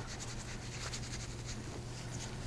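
Gloved hands working soap into a washcloth and folding it: soft, quick rubbing and scratching of cloth, over a low steady hum.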